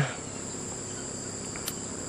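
Steady high-pitched chirring of insects in the background, with one faint small click near the end.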